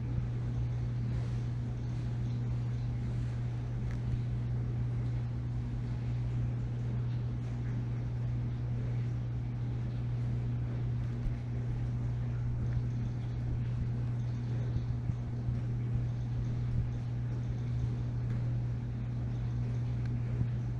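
A steady low machine hum, even in pitch and level throughout.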